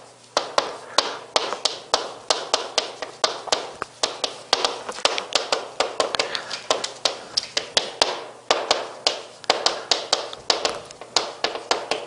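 Chalk writing on a blackboard: a quick, irregular run of sharp taps, several a second, as each stroke of the characters is struck onto the board.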